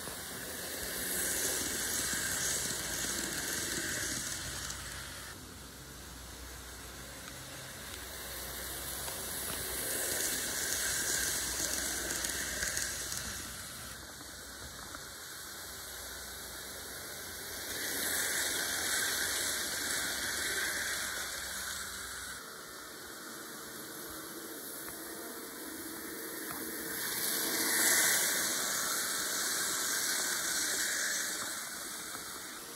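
N scale model train running on its track: the wheels and motor make a steady high rolling whir that swells louder four times, about every nine seconds, as the train passes close by on each lap.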